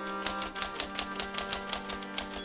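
Typewriter keys clacking in an even run, about five or six strokes a second, beginning a quarter second in, over a held musical note.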